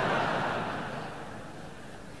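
A large audience laughing at a punchline, the laughter dying away over about a second and a half.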